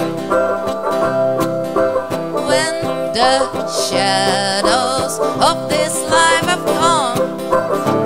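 Live acoustic string music: a steel-string acoustic guitar and a small metal-bodied ukulele strummed and picked together, with a voice sliding between notes over them in the middle.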